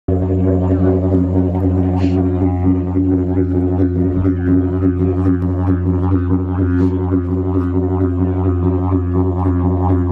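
Didgeridoo played live: a steady, unbroken low drone with rhythmic pulsing in the tone above it.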